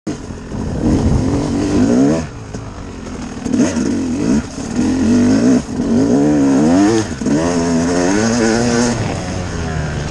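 Dirt bike engine revving hard under load, its pitch climbing and dropping again and again as the throttle is opened and briefly shut off between climbs.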